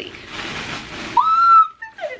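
Editing transition sound effect: a whooshing rush of noise for about a second, then a short whistle-like tone that slides up and holds for about half a second before cutting off.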